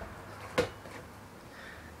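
A single short, sharp knock a little over half a second in, against quiet room tone.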